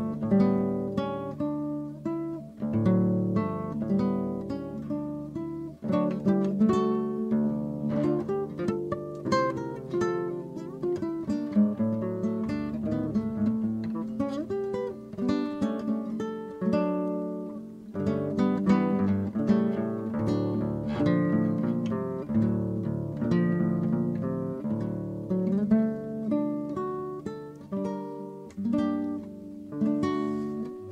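Acoustic guitar music: a continuous run of plucked notes and chords.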